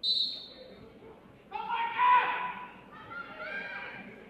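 Voices shouting from the floor of a gym, likely a coach and spectators yelling to the wrestlers, loudest about two seconds in. A brief high-pitched note is heard right at the start.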